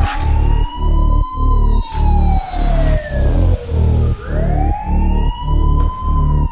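Bass-boosted G-house track opening with a siren-like wail that rises quickly and falls slowly, twice, over a heavy pumping bass beat of about two pulses a second.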